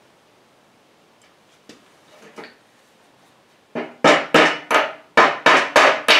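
A hammer driving a small steel roll pin into a tow hook's yoke to lock the hook's pin. A few faint clicks come first, then from about four seconds in a fast run of sharp metal strikes, roughly four a second, each with a brief ring.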